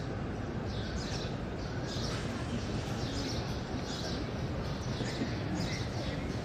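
Steady hubbub of a large crowd, with small birds chirping high above it over and over, a chirp every half second to a second.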